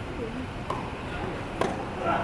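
Tennis racket striking the ball twice in a rally: a fainter hit a little under a second in, and a sharper, louder hit near the end.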